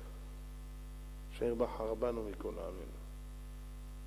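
Steady low electrical mains hum, a constant drone heard clearly in the pauses. A man speaks a short phrase in the middle.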